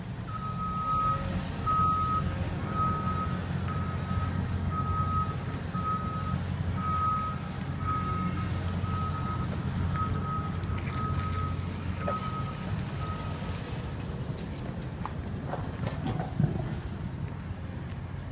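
A vehicle's reversing alarm beeps in one steady tone, a little over once a second, for about thirteen seconds and then stops, over a low engine rumble. A short knock is heard near the end.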